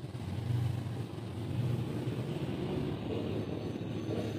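A steady low rumble, like a vehicle engine running, with slight swells in level.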